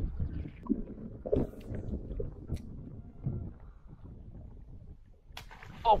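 Wind rumbling on the microphone, with a few sharp knocks scattered through it.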